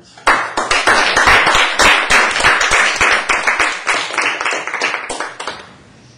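Audience applauding: many hands clapping, starting abruptly right after the talk ends, then thinning out and stopping near the end.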